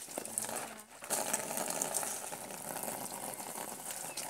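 Steady rushing, bubbling water in a tarpaulin catfish pond, with a short lull about a second in.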